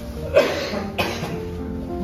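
A person coughing twice in short bursts over steady background music.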